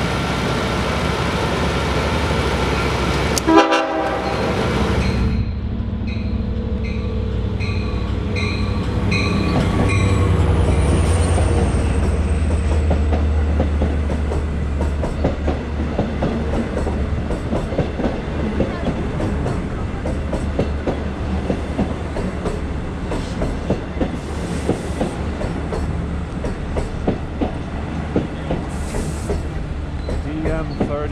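A Long Island Rail Road DM30AC diesel locomotive passing: a short blast of its horn, then a bell ringing about one and a half times a second over the engine rumble as it goes by. The bilevel coaches then rattle past over the rails.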